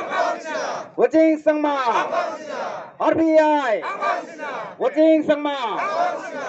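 A crowd of men shouting a slogan in chorus, led by a man on a microphone through a small portable loudspeaker: short shouted calls about every two seconds, each falling in pitch. The chant is the party name "RPI".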